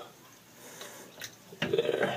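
Faint trickle and drips of tap water from a bathroom faucet into a camera water housing, with a couple of light clicks. A short murmur of voice comes near the end.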